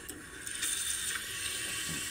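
Bathroom faucet turned on, the water growing stronger about half a second in and then running steadily into the sink over a shaving brush held under the stream.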